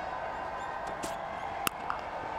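Cricket bat striking the ball once as a pull shot is played: a single sharp crack late on, over a steady stadium background.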